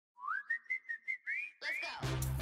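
Logo-animation sound effect: a whistle-like tone sweeps up and holds high while short pops sound about five times a second, then ends in two quick upward swoops.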